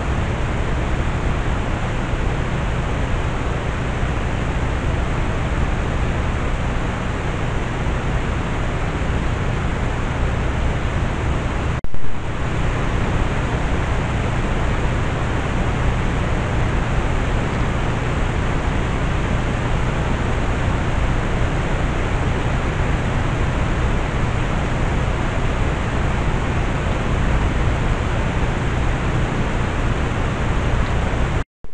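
Steady, loud hiss from a trail camera's built-in microphone, with no distinct sound from the animal. About 12 seconds in, the hiss briefly drops out with a short click where one recording ends and the next begins.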